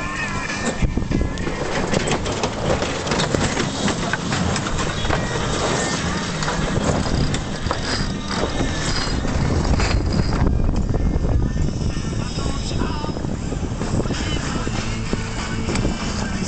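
Wind and deck noise on a sailboat during a tack, with the clicking of a sheet winch as the sheet is hauled in.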